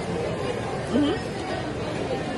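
Background chatter of several voices, with one short rising vocal sound about a second in.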